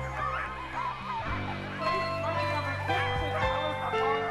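Background music with held chords, its bass shifting about a second in, over a team of sled dogs yelping and barking in many short calls.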